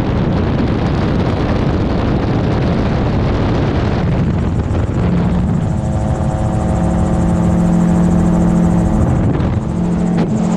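Gyrocopter in flight: its engine and pusher propeller drone steadily under wind rushing over the microphone. A steady low hum with a held tone comes up about halfway through.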